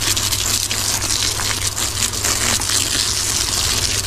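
Water spraying steadily from a garden hose watering wand onto the mulch of potted tomato plants.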